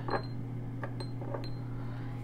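A few light clicks and small clinks, about four in two seconds, some with a brief high ring, as small objects are handled and set aside, over a steady low hum.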